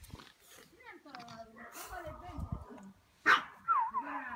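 A pug puppy barks once, short and sharp, about three seconds in.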